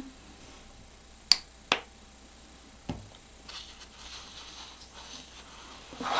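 Two sharp clicks about a second in, close together, then a softer knock near three seconds and faint rustling: hands handling a bottle of acrylic paint and a piece of sponge on the table.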